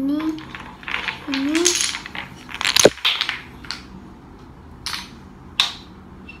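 Coloured wooden domino blocks toppling and clattering onto the floor: a run of sharp wooden clicks and clacks, thickest about halfway through, with a few single knocks afterwards.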